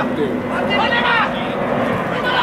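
Live match sound from an amateur football pitch: players shouting to each other during play over a steady rushing roar.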